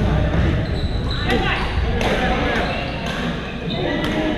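Pickleball paddles hitting a plastic ball during a rally: three sharp pops about a second apart, echoing in a large gymnasium, over the chatter of players.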